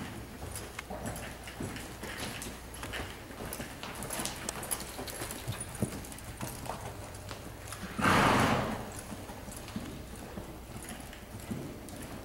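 Horse's hooves walking on the sand footing of an indoor arena, soft irregular footfalls. About eight seconds in, a loud rushing burst of noise lasting under a second stands out above the hoofbeats.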